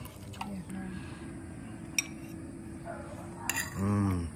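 Metal cutlery clinking and scraping on plates as food is served, with one sharp clink about two seconds in.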